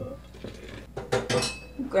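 A small bowl clinking against the rim of a glass mixing bowl as the yeast mixture is tipped out into the flour, with a couple of sharp clinks a little over a second in.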